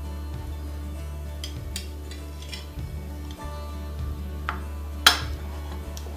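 Background music with a few short clinks of a metal fork against a ceramic plate, the sharpest one about five seconds in.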